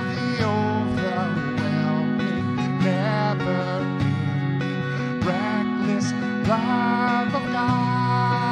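A man singing a worship-song chorus while strumming an acoustic guitar, his voice sliding between held notes over steady strummed chords.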